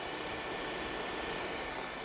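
Xiaomi TruClean W10 Ultra wet-dry vacuum cleaner running in auto mode, its roller brush spinning as it washes and vacuums the floor: a steady hiss.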